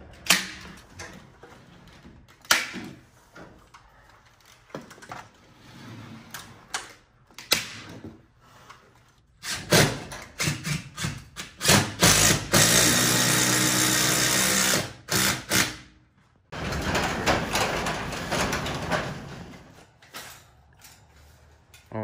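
A power drill runs in two bursts past the middle, each about two and a half to three seconds long, the first with a steady motor whine. Sharp knocks and clicks of hand work at the garage door's header come before them.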